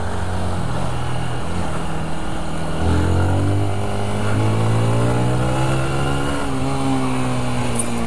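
Honda CBR125's single-cylinder engine pulling through the gears under a steady rush of wind. The engine note climbs, drops with an upshift about three seconds in, climbs steadily again, and steps down once more around six seconds.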